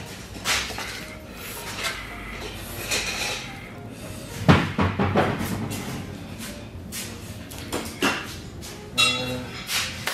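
Heavy stewed beef trotters set down one after another onto a plate with a metal skimmer: a series of irregular knocks and clatters of bone and metal against the plate, the loudest about halfway through.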